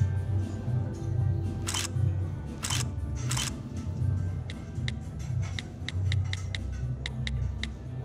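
Phone camera shutter sound effect clicks three times as a selfie is taken, then a quick run of about a dozen small keyboard tap clicks as a caption is typed on the phone, over background music with a steady bass.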